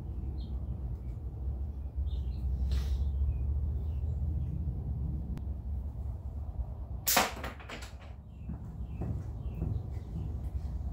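Homemade magnetic crossbow with a steel limb firing a colored-pencil bolt through a chronograph: a single sharp snap of the limb and string about seven seconds in, over a steady low rumble.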